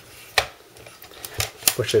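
Hard drive tray sliding into an aluminium drive enclosure, clicking and knocking. A sharp click comes about half a second in, then a few quick clicks near the end as it is pushed into place.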